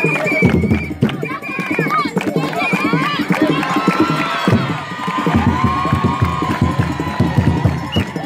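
Traditional Mozambican dance music: wooden hand drums beaten in a fast rhythm with handclapping, and voices singing and calling over it, with crowd noise around.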